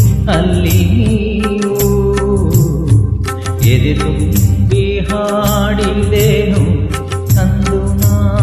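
Karaoke backing track of a Kannada film song playing an instrumental interlude: a wavering melodic lead line over a steady beat and percussion.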